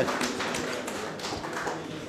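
Scattered hand claps from an audience after a speech, thinning out and fading over the two seconds.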